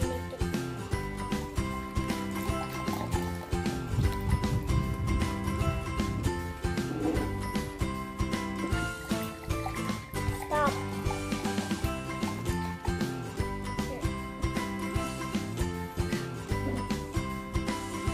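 Background music with a steady beat, over which milk is faintly poured from a carton into a glass.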